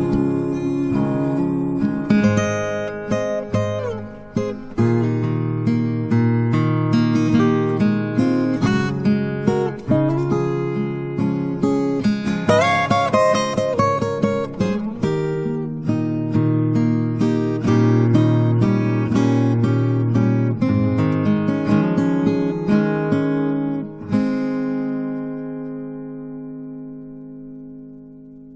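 Instrumental music with acoustic guitar, strummed and picked chords in a steady run of notes, ending on a last chord that rings out and fades near the end.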